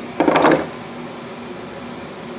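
A short clatter of metal with a few sharp clicks, about a quarter second in, as a Model T piston and connecting rod are freed from a bench vise and picked up. A steady low hum runs underneath.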